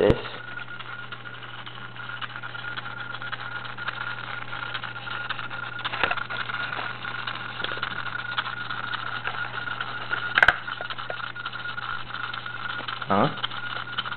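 Radio-controlled buggy glitching on low transmitter batteries: the steering servo jitters and the electric drive motor twitches, giving a steady high electrical whine over a low hum with scattered clicks, the sharpest about ten seconds in.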